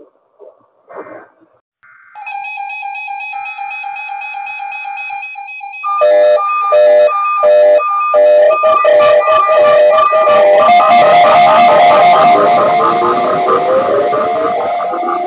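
Many weather alert radios and alarm receivers in one room going off together for the weekly weather-radio test. About two seconds in, one steady alert tone with a patterned higher tone above it starts. About six seconds in, pulsing beeps join it, and from about eight seconds in many different beeping and gliding alarm tones pile up, loud.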